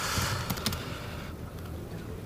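Quiet lecture-hall room tone: a soft hiss for about the first second, two light clicks, then a low steady hum.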